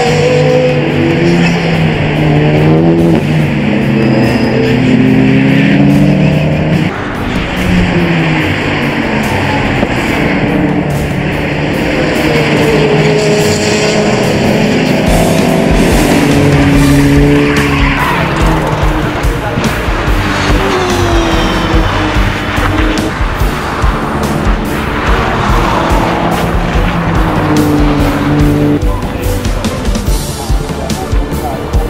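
Race cars' engines passing at speed, their pitch rising and falling as they go by, mixed with a background music track.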